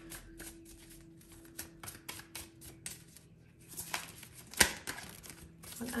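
A tarot deck being shuffled by hand: a quick run of card clicks and flicks, with one sharp, louder snap a little past the middle.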